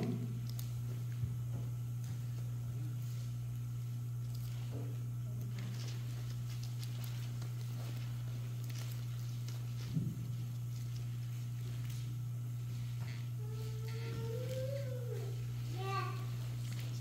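Pages of a Bible rustling at a pulpit as a passage is looked up, over a steady low hum. A single knock about ten seconds in, and a short squeal that rises then falls near the end.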